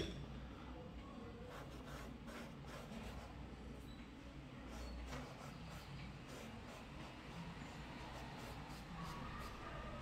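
Faint brushing and scratching of a paintbrush working paint on a palette and canvas, with scattered small clicks and taps as the brush is handled.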